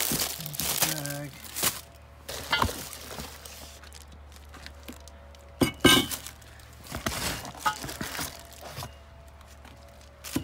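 Plastic wrap crinkling as wrapped metal stand tubes are handled in a cardboard box, with several sharp knocks of the metal pieces, the loudest about six seconds in.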